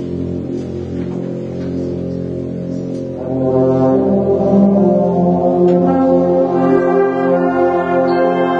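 Concert wind band playing long held brass chords, the low brass carrying the sound at first; about three seconds in the chord swells louder as higher instruments join.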